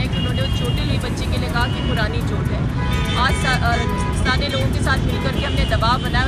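Roadside street noise: a steady low rumble of road traffic, with people's voices and scattered high tones over it.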